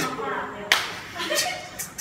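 A single sharp hand clap about a third of the way in, with voices around it.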